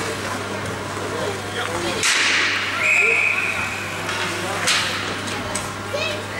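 Ice hockey rink during a stoppage: a hiss of skate blades scraping the ice about two seconds in and again near the end, a brief high tone just after the first scrape, and scattered voices over a steady low hum.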